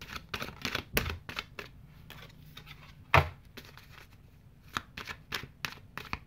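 Tarot cards handled and shuffled by hand, a run of quick, irregular card clicks and flicks, with one louder snap about three seconds in; a card is drawn and laid on the table.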